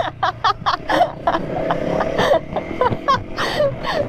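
A woman laughing in a quick run of short bursts, several a second.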